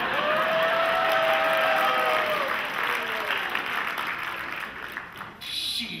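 Audience applauding, with one long held tone over it for about two seconds at the start. The clapping thins out toward the end.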